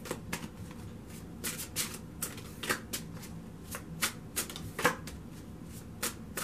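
A tarot deck shuffled by hand, packets of cards dropped from one hand onto the other: a string of short, irregular card slaps and flutters, about two a second.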